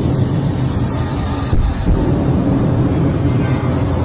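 Wind buffeting a handheld camera's microphone outdoors: a loud, steady low rumble.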